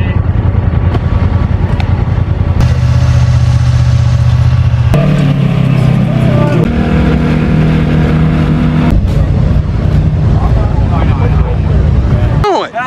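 Side-by-side UTV engines running, each a steady low note that jumps abruptly to a different engine every couple of seconds, one of them a Polaris RZR XP driving past.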